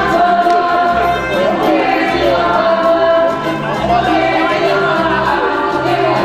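Live music on an electronic keyboard, with a pulsing bass line and voices singing over it.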